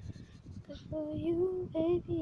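A voice singing a slow melody of long held notes, starting about a second in.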